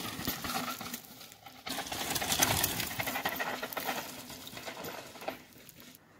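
Mountain bike riding down a dry dirt and gravel trail: tyres rolling over loose dirt and small stones, with dense rapid clicks and rattles from the bike. The sound drops out briefly about a second and a half in, then carries on and fades toward the end.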